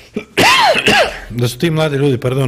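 A man clearing his throat twice in quick succession, about half a second in, before his voice starts again.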